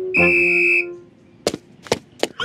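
A cartoon police whistle blown in one steady, shrill blast of about half a second, followed by two sharp taps of cartoon running footsteps.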